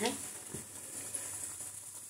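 Semolina-and-potato rolls deep-frying in a kadhai of hot oil: a faint, steady sizzle.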